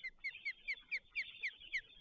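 A bird calling: a run of about eight short notes, each sliding down in pitch, about four a second.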